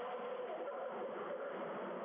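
Steady background hiss with a faint wavering hum and no sharp strikes.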